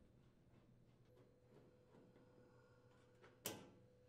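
Near silence: room tone, with faint scattered ticks and one short, sharp click about three and a half seconds in.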